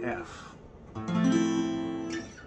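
Acoustic guitar: a strummed chord rings out and fades, then about a second in a new chord is strummed and left ringing. It is the same open C-chord shape moved up the neck by a half step.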